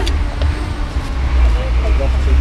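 A steady low rumble with faint voices talking in the background.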